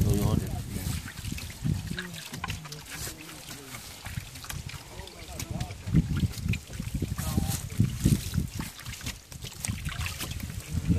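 Water carrying gold concentrate poured from a plastic tray through a green classifier screen into a plastic tub, splashing and trickling, with several men talking over it.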